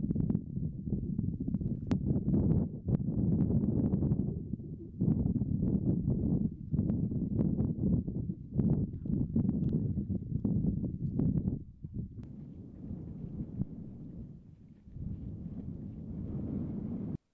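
Wind buffeting the microphone in irregular gusts, a low rumbling noise that eases off for a few seconds before picking up again near the end.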